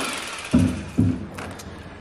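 Bubba cordless lithium-ion electric fillet knife switching off, its buzzing motor fading out at the start. Then come two brief sounds of a man's voice, about half a second and a second in, and a few faint clicks.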